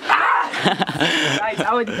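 A young man's voice talking animatedly, with breathy, noisy bursts at the start and about a second in.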